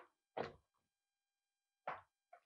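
Hands working food in a plastic bowl: three short, soft handling sounds, two close together near the start and one near the end.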